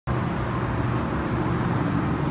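A vehicle engine running steadily, heard as an even low hum with outdoor traffic noise around it.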